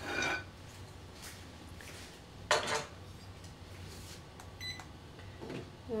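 Polish stoneware dinner plate being taken down from a shelf and handled, clinking against pottery, with one louder sharp ceramic clatter about two and a half seconds in.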